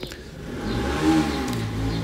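Road traffic noise, a motor vehicle passing, swelling about half a second in over a steady low hum.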